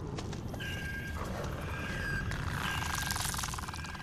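Horror-trailer sound design: a low rumble under a thin, steady high tone, with a rapid, fast-ticking rasping sound rising about two and a half seconds in.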